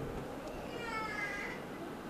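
A faint, high-pitched call about a second long that falls slightly in pitch, over low room noise.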